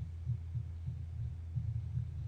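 A low, steady background hum with a faint, uneven low throb and nothing else.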